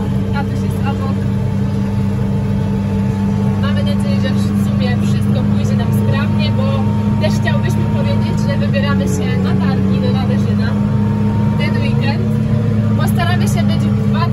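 Tractor engine running at a steady pitch, heard from inside the cab as a constant low drone, with a person's voice over it from about four seconds in.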